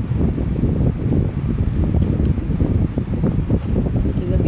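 Steady low rumble of air buffeting the phone's microphone: wind noise on the mic.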